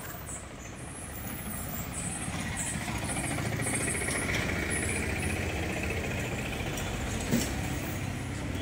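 Road traffic: a motor vehicle's engine running, growing louder over the first few seconds and then holding steady. A single short knock near the end.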